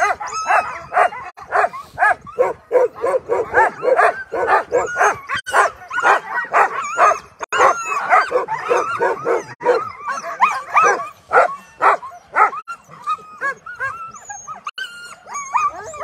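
A team of harnessed Alaskan husky sled dogs barking and yipping in a rapid, chatty chorus of short high calls, several a second, the pre-start excitement of dogs held back in the gangline. The calls thin out over the last few seconds.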